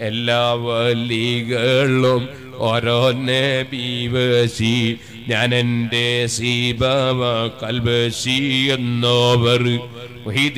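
A man's voice chanting melodically into a microphone, in long held phrases with short breaks between them.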